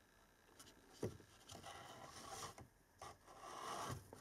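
Faint scraping and rubbing as a new cabin air filter is slid into its plastic housing in a Toyota Sequoia, with a light click about a second in.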